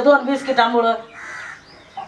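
A person's drawn-out voice for about a second, then one short, harsh bird call.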